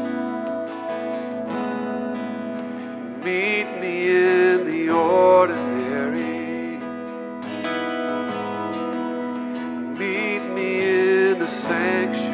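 Slow live worship song: an acoustic guitar strummed under a man singing long, wavering held notes, with sung phrases around the middle and again near the end.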